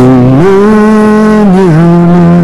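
A singer holds one long note on the last word of a line ('mañana') over a guitar accompaniment. The note steps up in pitch about half a second in and dips near the end.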